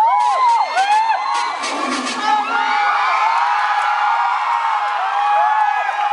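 An audience cheering and screaming, with many high voices whooping over one another; it grows denser after a couple of seconds. The dance music fades out in the first two seconds.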